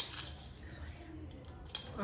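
A plastic drinking cup being handled at a table: a sharp click at the start, then a few faint ticks and knocks, with breathy exhaling from a mouth burning from very spicy food.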